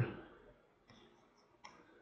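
A few faint, sharp clicks of a computer mouse while painting with a brush in photo-editing software, the clearest a bit under a second in and near the end.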